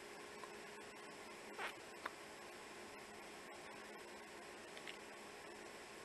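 Quiet steady hiss with a faint hum underneath, with a short soft sound about one and a half seconds in and a small click just after.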